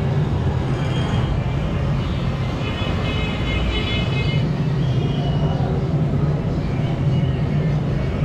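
A steady low mechanical hum with a rumbling haze beneath it, unchanging in level throughout.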